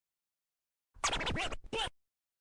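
Record-scratch sound effect: a few quick back-and-forth scratches with sweeping pitch, starting about halfway in after dead silence and lasting about a second.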